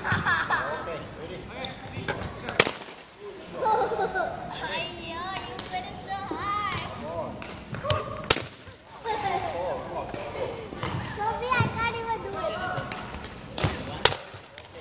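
Badminton rackets striking a target held overhead: three sharp cracks a few seconds apart, with children's voices and calls in between.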